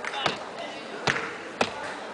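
Dancers stomping on a stage floor: three sharp, separate thuds at uneven spacing, over a murmur of voices.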